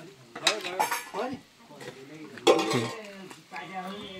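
Small steel bowl and utensils clinking as food is handled, with a few sharp clinks about half a second in and a louder one about two and a half seconds in.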